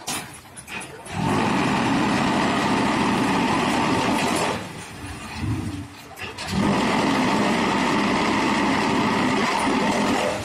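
QT4-18 automatic hydraulic block machine running a moulding cycle: its mould vibration runs loud and steady in two spells of about three and a half seconds each, separated by a quieter gap of about two seconds.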